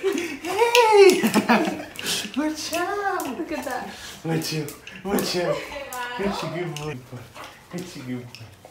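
Excited high-pitched vocalizing during an excited greeting: a string of short calls, each rising and then falling in pitch, with many sharp clicks and taps over them.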